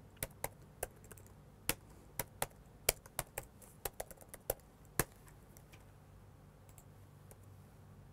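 Typing on a computer keyboard: about a dozen irregular keystrokes over the first five seconds, then it stops.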